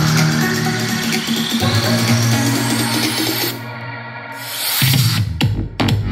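Electronic dance music playing loud through a Gradiente GST-107 tower soundbar. A rising sweep builds, the music thins out abruptly about three and a half seconds in, and then the beat comes back with strong bass.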